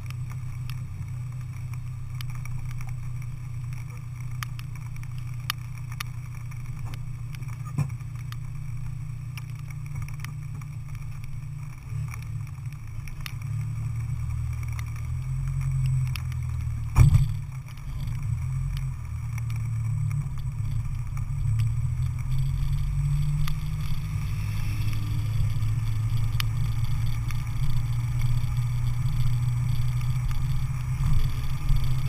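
Car engine idling, low and steady, picked up by a camera on the car's front fender. A single sharp thump comes about seventeen seconds in, and the engine grows a little louder in the last part as the car pulls forward.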